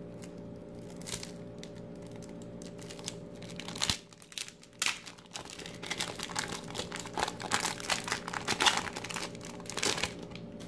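A trading-card pack wrapper handled, peeled and torn open by hand: a few faint rustles at first, then dense crinkling and tearing through the second half, ending with a louder rustle as the cards are pulled out.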